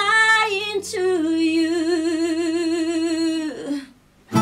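A woman singing alone with no instruments: a short rising phrase, then one long held note with vibrato that fades out shortly before the end.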